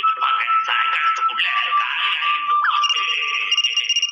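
Cartoon background music, joined about three seconds in by a telephone ringtone: a repeating high electronic trill.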